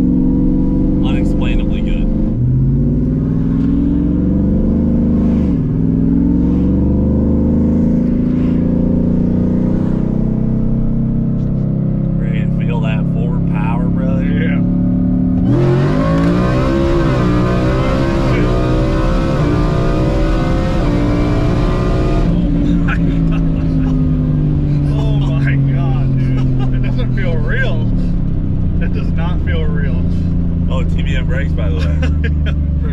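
Whipple-supercharged Ford F-150's V8 heard from inside the cab: it runs along steadily with a short pull a few seconds in. About halfway through it goes to a hard full-throttle pull of about seven seconds, the engine pitch climbing and dropping at each upshift of the 10-speed automatic, and it cuts off suddenly back to cruising.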